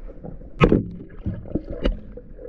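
Underwater sound beneath a boat hull: a low rumbling water noise broken by two sharp knocks, one about half a second in and one near the end.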